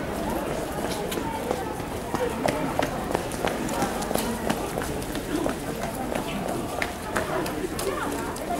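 Footsteps of several people walking on cobblestones: irregular sharp clicks of shoes on stone, over indistinct talking of the people around.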